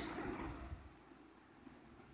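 Faint room noise that fades to near silence about a second in.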